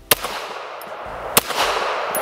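Two shots from a Ruger PC Charger 9mm pistol fitted with a Franklin Armory binary trigger, a little over a second apart: one fires as the trigger is pulled and the other as it is released. Each shot is followed by a long echo that rings on between them.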